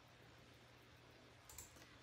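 Near silence: room tone with a low steady hum, and a couple of faint small clicks or rubs about one and a half seconds in.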